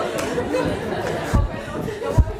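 Students in a lecture hall chattering among themselves, several voices overlapping, with a dull thump about a second and a half in.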